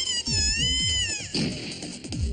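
A girl's long, high-pitched wavering scream, cut off about a second and a half in, over music with deep falling booms.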